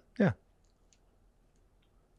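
A short spoken 'yeah', then quiet room tone with a few faint small clicks from fingers working a metal necklace chain and pendant.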